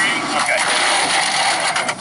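Fire engine's water nozzle spraying, a steady hissing rush of water.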